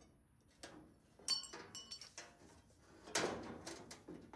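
Thin aluminum sheet panel clinking and rattling against the car's metal radiator support as it is set in place. A sharp, ringing clink comes about a second in, then a few lighter taps, and a longer rattle near the end.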